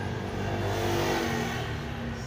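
A road vehicle's engine passing close by, swelling to its loudest about halfway through and then fading.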